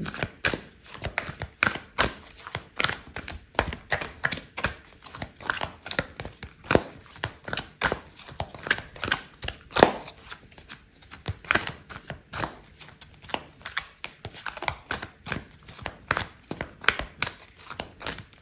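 A deck of oracle cards being shuffled by hand: a continuous run of quick, irregular papery slaps and flicks, several a second.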